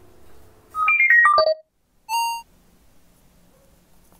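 A short electronic jingle: a quick run of clear tones stepping down in pitch, then a single ding about half a second later.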